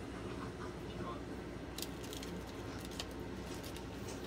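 Wooden chopstick scraping and clicking against a small metal ladle as the last dalgona caramel is scraped out, a few light sharp clicks in the second half, over a steady low background hum.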